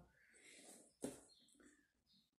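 Near silence: faint handling noise as a small cardboard box is picked up, with one soft click about a second in.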